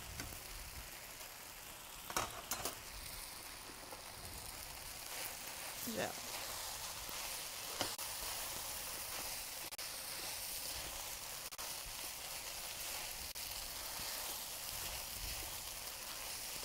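Rice, chicken and vegetables sizzling in a hot wok while being stirred with a spatula, a steady frying hiss. A couple of sharp knocks about two seconds in.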